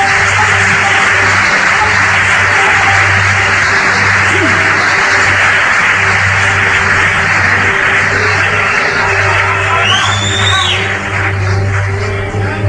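Instrumental electronic music: a bright hiss-like synth wash held over a steady low bass note, with a short synth sweep that rises and falls about ten seconds in.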